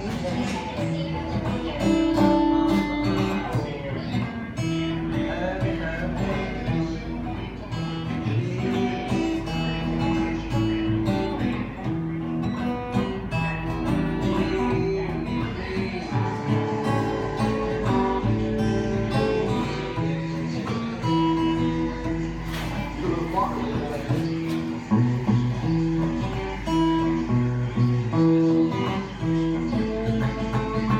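Acoustic guitar playing a blues tune, with notes changing continuously and no pauses.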